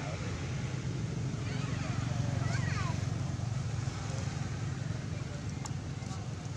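A steady low rumble, like a motor running in the background, under faint voices. A few short high gliding calls come about two seconds in.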